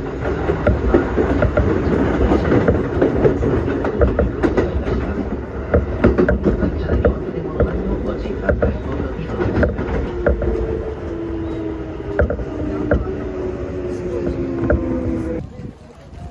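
Kintetsu electric train running, heard from on board: a steady rumble with wheels clicking over rail joints. From about ten seconds in, the motor whine falls in pitch as the train slows.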